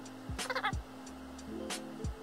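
Background music with a drum beat and bass line. About half a second in, a short run of rapid pulsed, pitched sounds stands out above the music as the loudest part.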